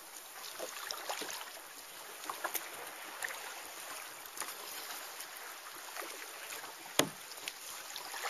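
Water lapping and splashing close around a kayak as it is paddled, with many small drips and splashes. One sharp knock about seven seconds in is the loudest sound.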